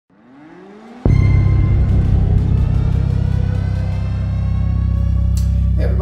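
Intro music: a rising swell for about a second, then a sudden deep hit that holds as a loud low drone with ringing tones above it.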